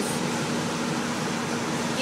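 Steady road noise inside a moving car's cabin, with tyres hissing on a rain-wet highway.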